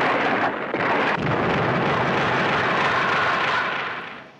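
Monster-fight sound effects from a kaiju film: a dense crash of explosive, rushing noise with sudden hits at the start and about a second in, then a steady wash of noise that eases off near the end.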